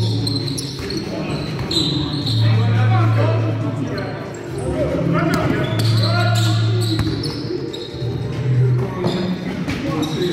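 Basketball game on a wooden sports-hall floor: the ball bouncing, sneakers squeaking and players calling out, with a low hum that comes and goes in stretches of a second or so.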